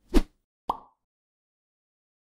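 Two short pop sound effects from an animated end card, about half a second apart, the second higher-pitched than the first.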